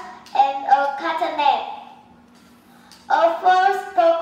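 A child's voice speaking, with a pause of about a second in the middle before speaking resumes.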